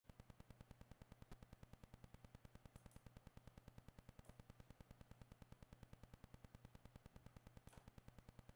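Near silence: a faint low hum that pulses rapidly and evenly, about eight times a second.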